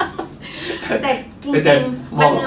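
Speech only: people talking in conversation.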